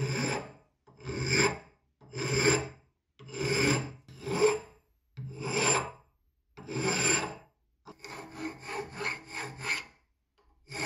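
Hand file rasping across the edge of a metal faucet handle held in a bench vise: seven long, even strokes about a second apart, then quicker short strokes over the last two seconds.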